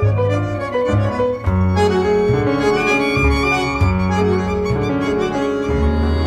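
Tango quartet of violin, bandoneon, piano and double bass playing an instrumental passage, the violin prominent over held bass notes.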